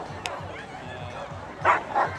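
A dog barks sharply near the end, loud above the background chatter of onlookers.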